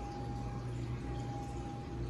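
Room tone: a steady low hum with a thin, steady high tone running through it.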